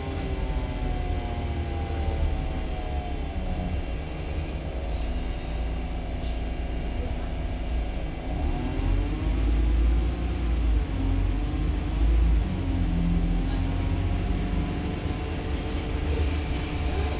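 Volvo B8RLE bus's diesel engine and drivetrain heard from inside the saloon over a steady low rumble. A whine falls in pitch over the first few seconds as the bus slows, then rises again from about halfway as it pulls away and accelerates.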